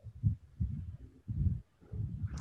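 A caller's voice coming in over a poor Zoom connection, heavily muffled and choppy: irregular dull, low bursts with no intelligible words, breaking up several times.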